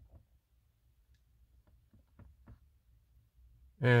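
A few faint, short clicks from the car's infotainment controller and buttons being worked, over a low, steady cabin hum; a man starts speaking near the end.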